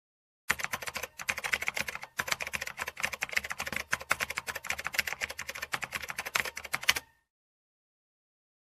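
Typing sound effect: a rapid, dense run of key clicks. It starts about half a second in, breaks off briefly twice in the first two seconds, and stops suddenly about a second before the end.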